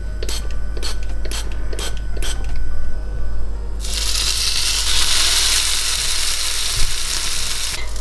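An oil spray bottle is pumped several times in quick succession, each pump a short hiss. About four seconds in, an olive-oiled plant-based burger patty is laid in the hot frying pan and starts to sizzle strongly and steadily.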